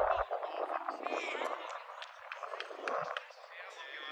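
Distant shouting from footballers and spectators across an outdoor pitch, a few voices calling out at once with short gaps, with no close voice.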